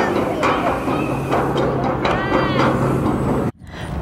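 Stroller wheels rumbling as it is pushed down a plank gangway, with a steady low hum through most of it and a child's faint voice about two seconds in. The sound cuts off suddenly near the end.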